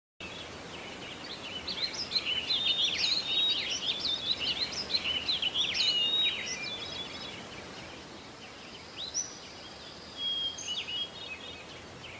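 Several small birds chirping and twittering over a steady background hiss, busiest in the first half, then thinning to a few scattered calls.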